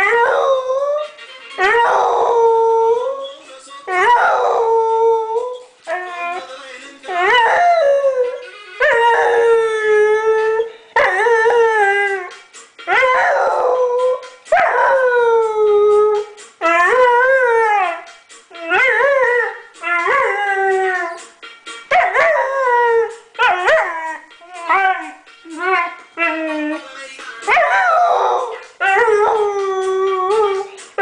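Bouvier des Flandres howling along to a song, a long run of wavering howls, each a second or two long, many sliding down in pitch at the end.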